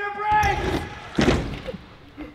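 BMX bike riding in over wooden ramps, tyres rolling and rumbling on the boards, with a louder rush about a second in as the rider hits the roller and takes off. A man's voice is heard at the start.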